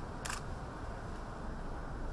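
Camera shutter clicking in a quick burst about a quarter second in, over a steady low background hum.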